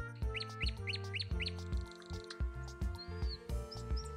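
Nightingale song: a quick run of about six rising whistled chirps, then a buzzy trill and a few high single notes near the end, over background music with a steady beat.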